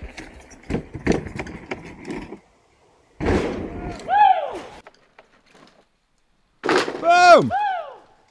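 Mountain bike rattling and clicking as it rolls over rock toward a drop, then a sudden landing impact followed by a rider's whooping shout. Near the end a second impact comes with loud shouts and "Boom".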